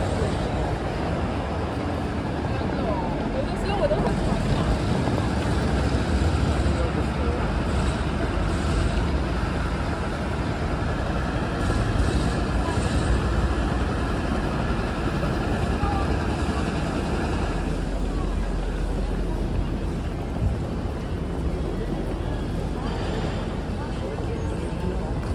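Busy city street ambience: passers-by talking over a steady low rumble.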